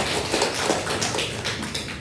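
A small group applauding: many quick hand claps that thin out and die away near the end.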